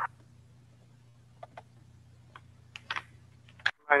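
A few faint, scattered clicks over a steady low hum on a call-in audio line. The line cuts out completely for an instant near the end, just before the next caller's voice comes in.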